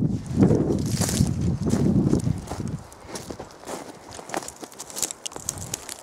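Footsteps crunching over loose shale scree, the flat rock flakes clinking underfoot. The steps are heavier for the first three seconds, then give way to lighter, scattered clicks of shifting shale.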